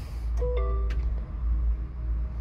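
Peugeot 3008 Hybrid4 start-up chime: a short two-tone electronic chime as the hybrid system switches on, ready to drive in electric mode with the petrol engine not running.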